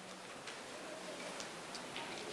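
A few faint, unevenly spaced clicks and taps over the low murmur of a room.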